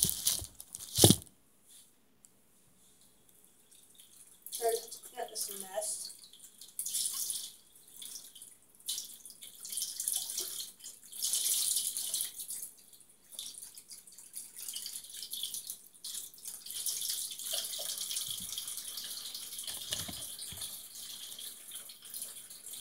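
Tap water running into a sink: a hiss that comes in a few seconds in and settles into a steady run. Two sharp knocks come right at the start.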